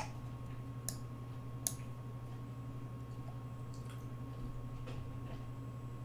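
Three light clicks about a second apart in the first two seconds, with a few fainter ticks later, over a steady low electrical hum: the clicks of moves being played on a computer chess board.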